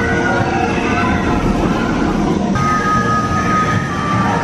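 Jurassic World VelociCoaster train running along its steel track, a steady low rumble.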